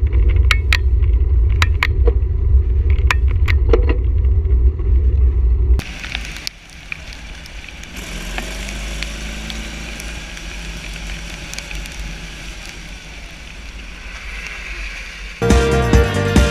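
Wind rumbling on the microphone of a camera riding along on a bicycle, with scattered clicks. About six seconds in it cuts to a much quieter, even outdoor noise, and music starts near the end.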